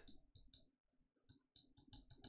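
Near silence with faint, rapid clicking from a computer mouse as it is used to draw on screen.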